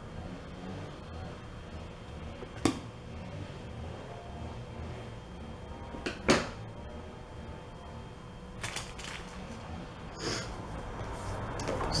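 Scissors and washi tape handled at a table while a postcard is decorated: a sharp click about two and a half seconds in, a louder one about six seconds in, and a few lighter taps later on, over a low steady rumble.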